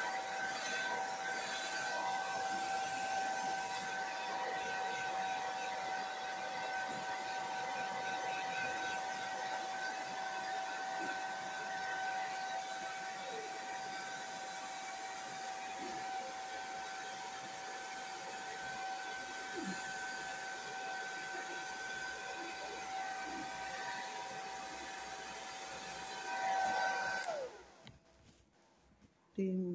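Handheld hair dryer with a pick-comb nozzle running steadily, a rushing airflow with a steady motor whine. It is switched off about a second before the end, its whine dropping in pitch as it stops.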